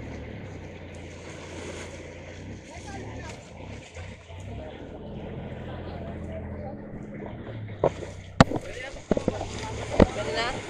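Outrigger boat's engine idling with a low steady hum under the wash of surf on the shore, then a few sharp knocks on the boat about eight to nine seconds in.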